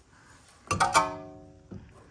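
A metal clank about a second in, followed by a short ringing tone that dies away within about a second, as of a steel brake part or tool being knocked.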